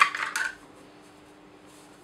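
A hair clip being unclipped and pulled from the hair: a sharp click and a brief small clatter in the first half second, then only a faint steady hum.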